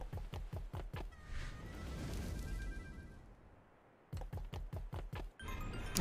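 Online video slot game audio: quiet game music with a run of clicks in the first second and another run of clicks about four seconds in, as the spinning reels land. In between, the sound fades almost out.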